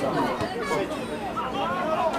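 Several people's voices talking over one another in overlapping chatter.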